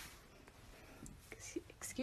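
Faint whispering over quiet room noise, with a few soft clicks in the second half.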